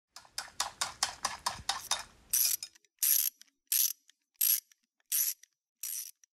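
Intro sound effect: a quick run of about nine ratchet-like clicks, then six short hissing bursts, each about a third of a second long and spaced about two-thirds of a second apart, with a thin high whistle in each burst.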